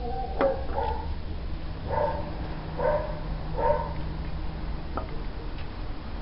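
A dog barking three times in the background, short barks a little under a second apart, with a couple of light clicks from the plastic end stop being worked off a shower rod.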